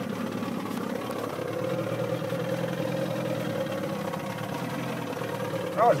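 Boat engine idling, a steady, even hum.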